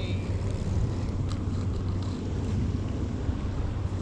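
Steady low outdoor rumble with an even hiss above it, at a constant level, with no distinct event standing out.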